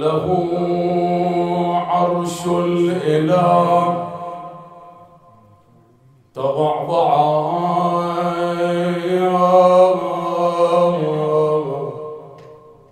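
A man chanting a mournful Arabic elegy solo into a microphone, in long held phrases on a steady pitch: the first fades away about four seconds in, and a second begins about six seconds in.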